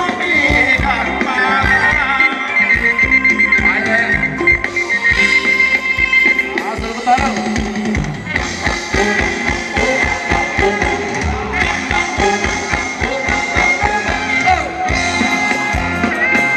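Thai ramwong dance music from a band, played loud over PA speakers, with a steady drum beat under the melody.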